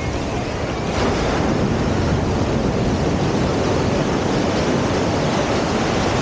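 Shallow ocean surf washing and foaming around the camera: a steady rush of breaking waves that swells about a second in.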